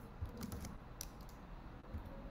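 Faint typing on a computer keyboard: a few separate key clicks as a terminal command is entered.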